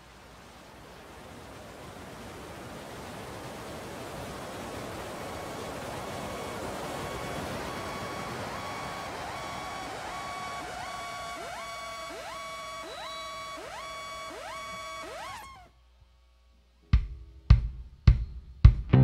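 An electronic noise swell builds over several seconds, with a held tone and a run of quick, evenly spaced rising pitch swoops in its second half, then cuts off suddenly. After about a second of silence, the band comes in with a few loud, sharp hits near the end.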